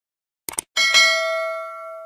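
Subscribe-animation sound effect: a quick double mouse click, then a bright notification-bell ding, struck twice in quick succession, that rings on and slowly fades.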